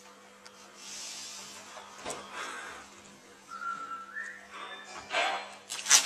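A single short whistled note about halfway through, held briefly and then rising in pitch, over faint room noise. Near the end there are a few louder scuffling noises.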